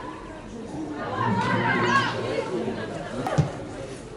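Footballers shouting and calling to each other across the pitch, with a single sharp thump about three seconds in.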